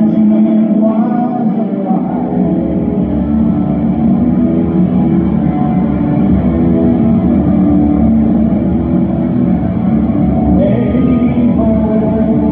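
Electric guitar played live through a concert sound system, a sustained instrumental passage of held notes, with deeper low notes coming in about two seconds in.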